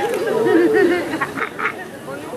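A person's voice making a drawn-out, wavering sound without words, followed by a few short breathy bursts, over outdoor chatter.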